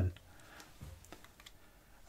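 A few faint computer-keyboard keystrokes, a short cluster of clicks around the middle of a pause in speech.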